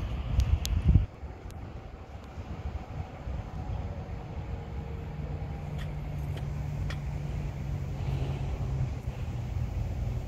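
Caltrain train approaching in the distance: a low, steady rumble, with a steady hum coming in about halfway through. Wind buffets the microphone in the first second.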